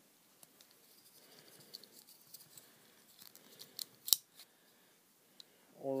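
Plastic Transformers Voyager Class Megatron figure handled in the hands: faint small clicks and rubbing of its plastic parts, with one sharp, louder click about four seconds in.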